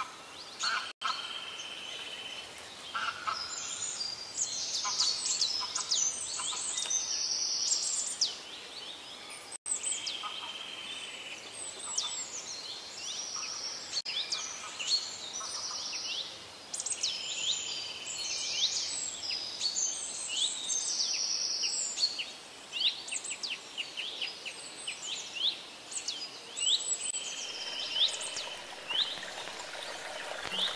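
Several songbirds singing together: a dense chorus of short chirps, quick falling notes, trills and brief whistles. The sound cuts out for an instant twice, once about a second in and once near ten seconds in.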